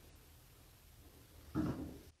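Quiet room, then one short, soft, low sound about one and a half seconds in as the pianist settles at the grand piano just before playing, a breath or a creak of the bench.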